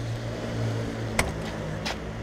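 Car engine idling steadily, a low even hum, with two short clicks, one a little past a second in and one near the end.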